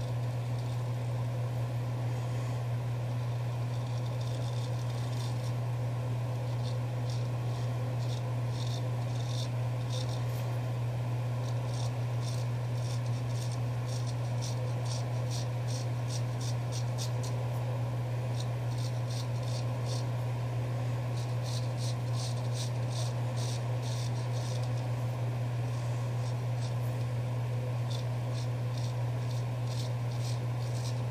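Straight razor blade scraping through stubble on the neck in runs of quick short strokes, several a second, with pauses between runs. A steady low hum sounds underneath.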